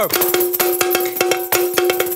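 A cowbell played in a fast, even rhythm, about six or seven strikes a second, with a steady ringing pitch under the hits and other light percussion.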